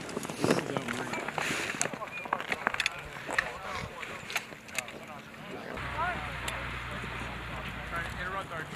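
Sharp clicks and light metallic rattles of razor wire being tied to a steel picket with wire ties, under faint voices. About six seconds in, a low steady hum sets in.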